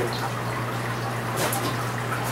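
Steady trickle of water running through a hydroponic growing system, with a low steady hum underneath.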